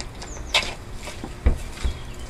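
Bristle dartboard being handled and knocked against a wooden fence: a sharp click about half a second in, then two dull knocks near the end.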